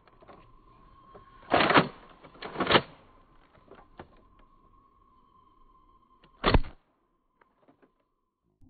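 A plastic Nerf revolver-style blaster being primed and its cylinder worked: two loud rasping strokes a second apart, light clicks, and a third stroke about six seconds in, over a faint steady high tone.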